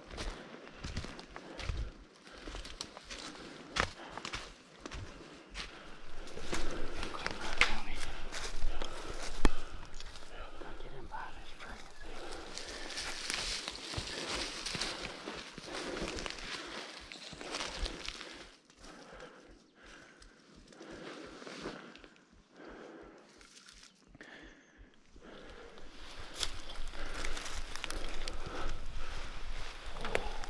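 Footsteps and crawling through dry leaf litter and twigs on a forest floor: irregular crunching and rustling, louder in places, with a stretch of regular soft steps or thumps in the middle.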